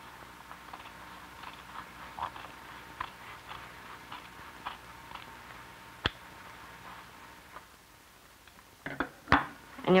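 Shears snipping through fabric seam layers: faint, irregular short snips over a steady low hum, with a sharper click about six seconds in and a couple of louder clicks near the end.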